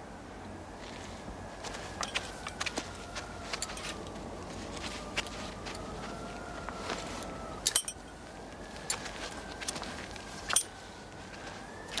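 Scattered clicks and light metallic clinks of a lineman's tools and gear against a wooden telegraph pole, with a short cluster of knocks about eight seconds in and another near the end. A faint, slowly wavering high tone runs underneath.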